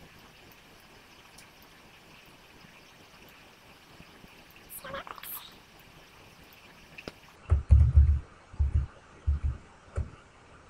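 Faint steady hiss, then a run of dull, low thumps in the last few seconds, about four or five knocks close together. They sound like bumps on the desk or mic stand carried into a desk microphone during computer work.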